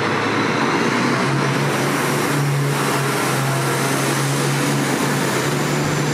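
Electric tram-train moving along the station tracks: a steady low electric hum over even rolling noise.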